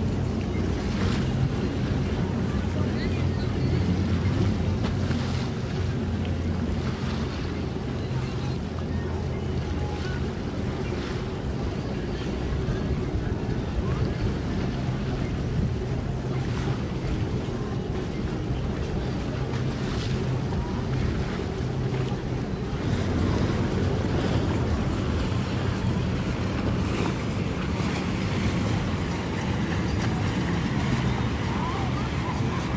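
Boat engine idling with a steady low hum, mixed with water lapping and wind on the microphone.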